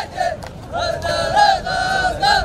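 Men's group chant of a Dhofari hbout, many voices together in long, drawn-out held notes that bend up and down. There is a short break just after the start before the chant comes back in.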